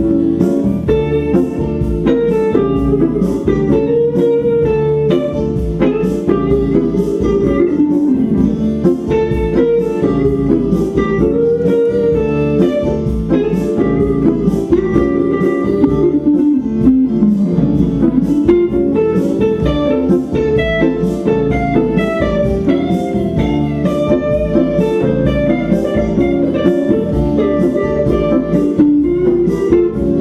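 Live band music: an electric guitar plays a lead melody with pitch bends over a steady rhythm of strummed guitar and keyboard chords.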